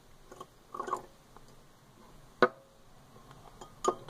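Plastic spoon stirring liquid in a glass beaker: quiet, with a few light ticks and one sharp knock against the glass about two and a half seconds in.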